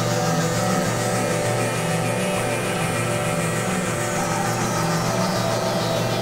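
Ambient electronic music played on synthesizers: sustained, layered synth pads and drones over a slowly shifting bass, with a hissing high texture that swells and then fades across the passage.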